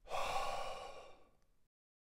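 A man's long sighing exhale that starts abruptly and fades away over about a second and a half.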